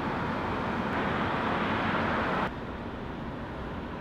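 Steady car-interior background noise, an even hiss and low hum, which drops suddenly to a lower level about two and a half seconds in.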